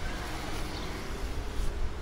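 Steady street ambience: a low rumble of wind on the microphone mixed with the hum of road traffic, with no single sound standing out.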